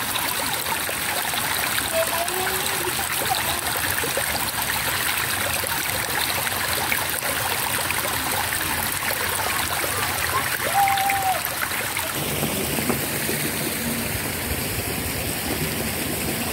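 Shallow rocky mountain stream, water running and trickling over the rocks in a steady wash.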